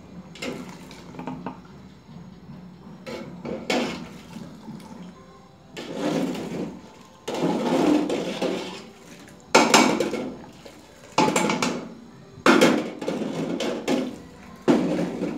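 Metal kitchenware being handled: irregular bursts of scraping and clattering that grow louder about halfway through.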